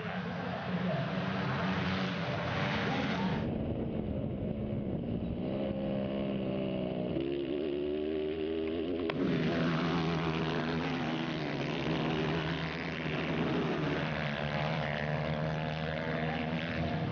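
230cc dirt bike engines racing, revving up and down through gear changes. The sound changes abruptly twice, about three and a half seconds in and again about nine seconds in.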